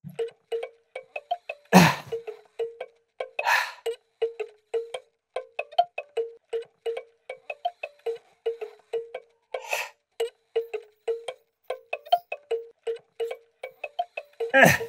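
Hand-cranked music-box mechanism plinking a tune note by note as the crank turns, about three to four notes a second, mostly on one repeated note with a few higher ones. A few louder noisy bursts cut in, the loudest about two seconds in.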